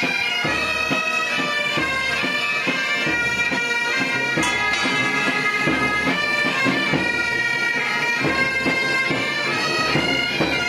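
Military pipe band playing: bagpipes carry a melody over their steady drone, with a drum beating about once a second underneath.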